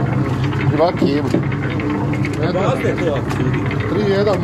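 Sausage-meat mixer running steadily, its paddle churning through ground meat in a tub. People talk over it a few times.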